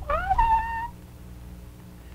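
A high-pitched wordless squeal from a puppeteer voicing a baby puppet, gliding up and then held for about a second before stopping. A low steady hum sits underneath.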